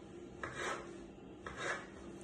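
A knife cutting through soft boiled eggplant onto a wooden cutting board: two soft cutting strokes, about half a second and about a second and a half in.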